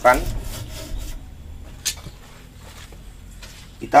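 Rubbing and rustling handling noise with a low rumble as a person moves around a potted bonsai, followed by a single sharp click about halfway through.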